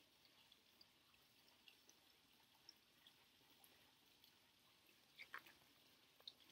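Near silence, with a few faint scattered ticks and a brief faint sound near the end.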